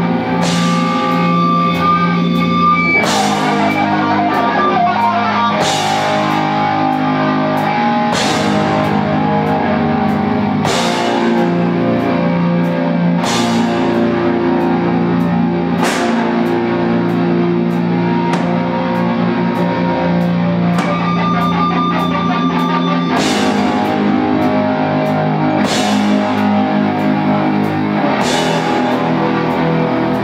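A live rock band playing heavy, distorted electric guitars over a drum kit, with a crash cymbal struck about every two and a half seconds on the beat of slow, sustained chords.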